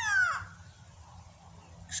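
Grey go-away-bird giving one drawn-out call that falls in pitch, about half a second long.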